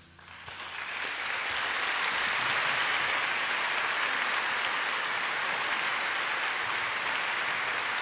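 Large audience applauding at the end of a song, swelling over the first second and then holding steady.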